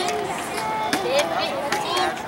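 Several people talking at once in overlapping chatter, with a few sharp knocks: one at the start, one about a second in, and one near the end.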